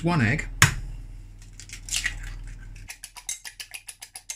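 An egg cracked with one sharp knock against a ceramic bowl, then a fork beating the egg in the bowl, a rapid run of light clicks of metal on china in the last second.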